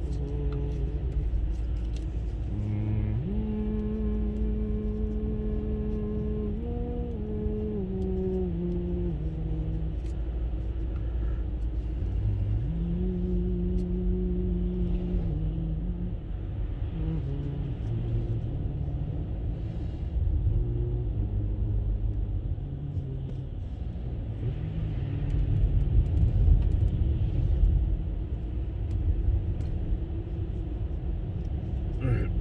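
Low, steady rumble of a car's engine and tyres heard from inside the moving cabin on a slushy road. Long held notes step down in pitch twice in the first half.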